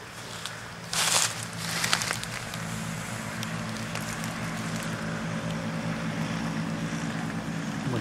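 A motor running with a steady, low, even hum that comes in about two and a half seconds in and keeps going. Before it, two brief noisy bursts about a second apart.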